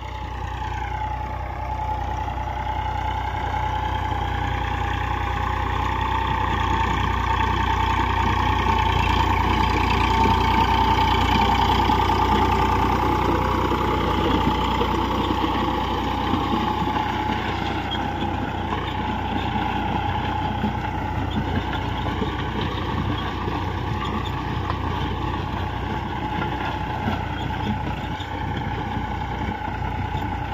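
Eicher 485 tractor's three-cylinder diesel engine running steadily under load as it drives a 7-foot rotavator through the soil. It grows louder as the tractor comes close, then slowly fades as it moves away.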